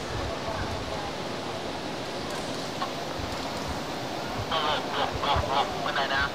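Steady hum of a large indoor sports hall, then near the end a burst of loud, high-pitched shouting voices lasting about a second and a half.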